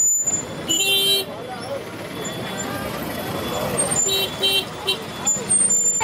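Electric rickshaw horn tooting: one short toot about a second in, then a run of short beeps from about four seconds in.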